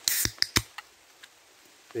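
An aluminium drinks can of Sprite being opened: a short fizzing hiss followed by two sharp clicks of the ring-pull, all within the first second.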